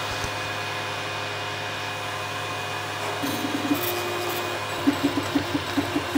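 Small cooling fans on a homemade Arduino laser engraver whir steadily. From about three seconds in, the engraver's stepper motors buzz in short runs, each at one pitch and the pitch changing from run to run, as the laser head moves to start engraving.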